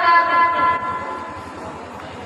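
A boy's voice through a loudspeaker, holding one long chanted note at a steady pitch that fades out about a second in.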